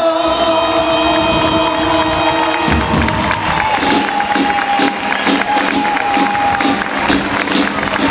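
Marcha music with held sung notes ends about three seconds in. A crowd then cheers and claps in rhythm about twice a second, while one long note holds on.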